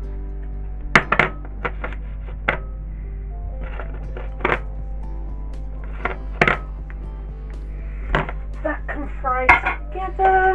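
Background music with a steady tune, over a string of sharp clinks and knocks from a ceramic bowl tapping against a frying pan as diced onion is tipped in, and from the bowl being set down.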